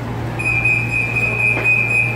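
Light rail car's electronic alert tone: one steady high beep, starting about half a second in and held for well over a second, over the car's steady low hum.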